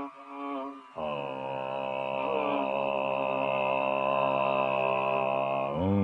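Carnatic classical music from a live concert recording: after a brief softer moment, one long note is held steady for several seconds, then the melody breaks into wavering, ornamented notes that grow louder near the end.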